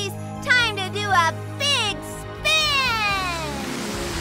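Cartoon soundtrack: sustained background music under short high-pitched wordless vocal squeals, with a long falling squeal starting about two and a half seconds in.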